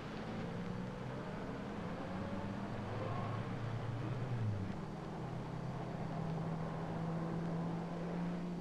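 Low, steady droning hum with faint background noise and no speech. The lower tone of the hum drops away just past the middle.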